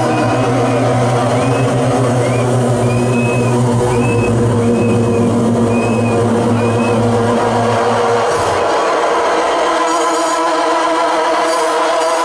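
Loud electronic music played from a laptop DJ setup: a held bass tone under a short, repeating high-pitched melodic figure. About eight seconds in, the bass drops out and only the upper layers carry on.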